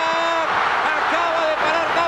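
Television football commentator's voice: one long held shout, then excited speech, over stadium crowd noise as a late attack goes into the box.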